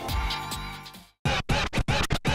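Background music fading out, then, after a brief silence about a second in, an electronic logo jingle of short choppy stabs with DJ-style record scratches.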